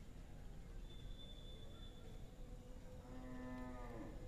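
Quiet pause with a faint steady background hum; in the last second, a faint, drawn-out pitched call from a distant animal.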